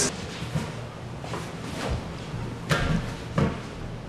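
A few soft thumps in the second half as large inflatable exercise balls are pushed and bumped against one another.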